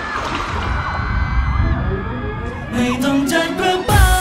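Thai pop song performed live: a lighter musical break with held tones and little bass, then a male voice sings from near three seconds in, and a strong beat hits just before the end.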